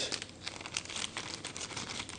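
A clear plastic bag crinkling and crackling in the hands as it is handled, a quick, irregular run of small crackles.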